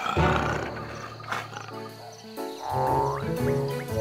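A cartoon lion's roar in the first second, followed by background music with pitched notes.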